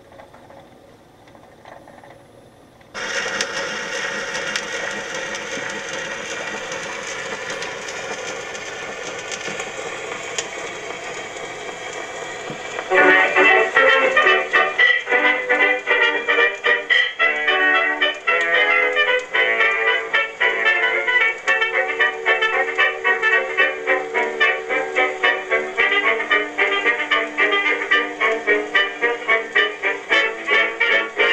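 Edison Diamond Disc phonograph (model A-250) playing a 1927 electrically recorded jazz dance-band record. A steady hiss of disc surface noise starts suddenly about three seconds in, and about ten seconds later the orchestra comes in loud with a bouncy rhythm and brass.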